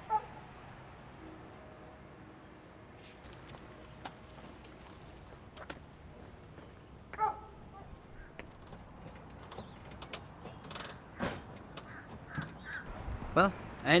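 Quiet outdoor background with a few short bird calls, one about halfway through and louder ones just before the end.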